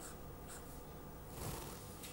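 Pen writing on paper: faint scratching strokes, a little louder about half a second in and again around a second and a half in.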